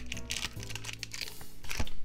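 Crinkly rustling of Pokémon trading cards and their packaging being handled, mostly in the first second, over steady background music.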